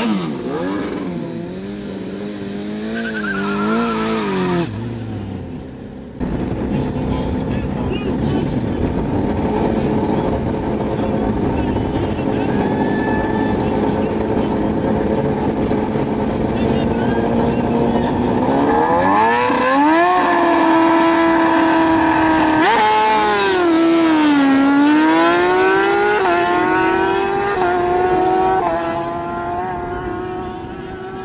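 Sport motorcycle engines revving in short blips at a drag-strip start line, then running steadily while staged. About nineteen seconds in they launch at full throttle, the pitch climbing steeply, then rising and dropping again several times as they shift up through the gears while pulling away down the strip.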